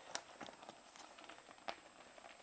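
Faint, irregular clicks and crunches of a mountain bike rolling over a gravel trail, with one sharper click near the end.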